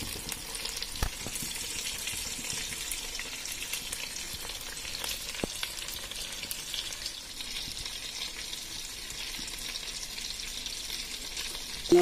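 Tandoori chicken sizzling in a covered pan: a steady frying hiss with scattered small crackles.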